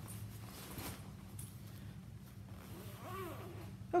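Faint handling of a fabric tote bag: soft rustling as its zipper is worked and the tab tucked.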